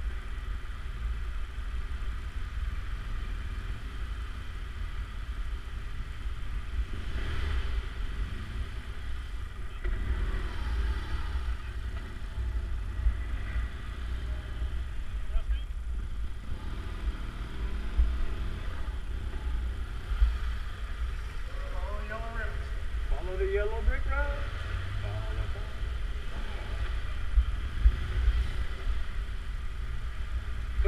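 Motorcycle engine running at low speed, a steady low rumble throughout. Voices talk faintly in the second half.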